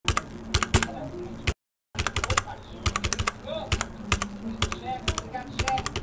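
Computer keyboard typing sound effect: rapid, irregular key clicks that keep pace with lettering being spelled out, broken by a brief total silence about a second and a half in.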